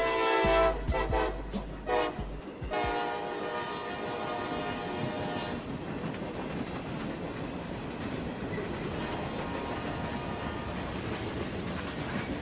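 Freight locomotive air horn sounding at a grade crossing: a blast that ends under a second in, a few short broken toots, then one long blast of about three seconds. After that comes the steady rolling noise of the freight cars passing over the crossing.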